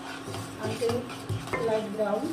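Wooden spatula stirring and scraping round a ceramic-coated kadai, with short squeaks as it drags on the pan surface. A steady hum from the induction cooktop runs underneath.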